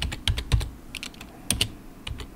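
Typing on a computer keyboard: a run of irregular keystrokes, with a few louder clicks.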